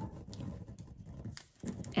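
Faint handling sounds: a few light taps and a soft rustle.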